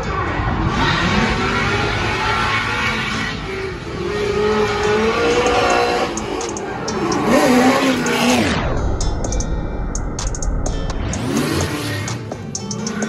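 Drift cars sliding under power, their engines revving up and down over a constant rush and squeal of smoking rear tyres. For a couple of seconds about two-thirds through, the sound goes muffled.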